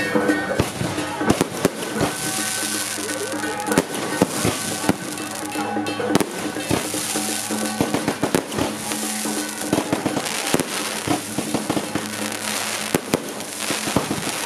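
Fireworks going off overhead: an irregular run of bangs and crackles over a steady hiss of sparks. Music with steady held notes plays underneath.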